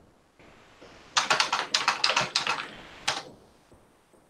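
Typing on a computer keyboard: a quick run of about a dozen keystrokes that starts about a second in and stops about two seconds later.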